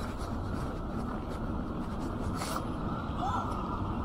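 Steady low rumble of city street ambience and distant traffic, with a brief tick about halfway through and a faint snatch of passers-by's voices near the end.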